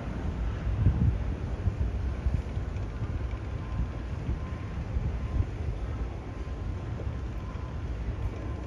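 Wind buffeting the microphone outdoors: a low, uneven rumble with no clear pitch.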